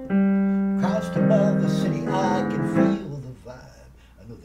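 Digital piano playing sustained chords, with a man singing a wavering held line over them. The sound dies away near the end.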